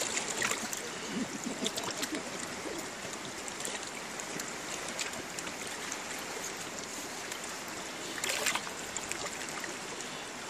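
Steady rush of river water around a small boat, with a brief louder hiss about eight seconds in.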